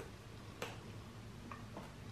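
Faint chewing of a crunchy chocolate-covered coconut snack: a few soft clicks and crunches over quiet room tone.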